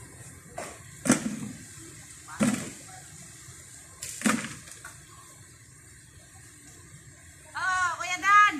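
Three sharp knocks, each with a short ringing tail, about a second or two apart over a quiet outdoor background, with a voice starting near the end.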